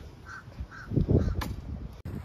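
A bird calling outdoors: four short calls in quick succession, about three a second, with a brief low rumble on the microphone about a second in.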